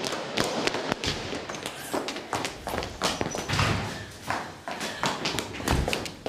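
Quick running footsteps on a hard floor, a rapid run of sharp taps, with a couple of heavier thumps about halfway through and near the end.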